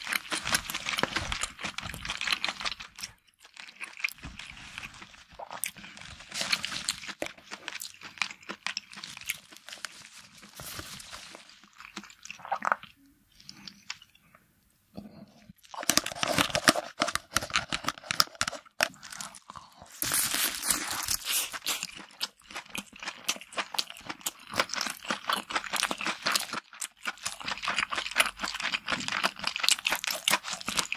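Close-miked ASMR eating of a whole cooked lobster: dense, irregular crunching, crackling and wet chewing as the shell and meat are torn and bitten. There is a brief near-silent pause about halfway through.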